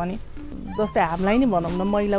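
Background music: a melody with sliding pitches and long held notes.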